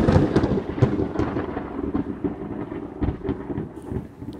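Thunderstorm sound effect: a peal of thunder rumbling with rain falling, loudest at the start and slowly dying away, with scattered crackles through it.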